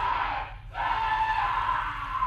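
A man screaming in pain under torture: two long drawn-out cries, the second starting a little under a second in, over a steady low throb.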